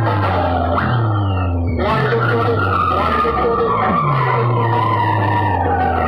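Loud electronic dance music played through a DJ sound system's amplifier rack, with deep bass notes that slide downward about every second and a half and sweeping pitch effects over the top.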